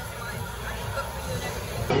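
Restaurant background: a steady low rumble with faint voices in the room. Near the end it cuts off abruptly into louder talk.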